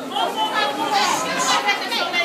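Background chatter of a gathered group: several people talking at once, with no single clear speaker.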